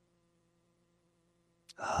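Near silence with a faint steady hum for most of it; near the end a short mouth click and then a man's audible breath in, running straight into the start of speech.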